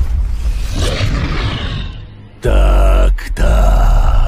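A loud low hit at the start fades away over about two seconds. Then a tiger growls twice in deep, drawn-out snarls of about a second each.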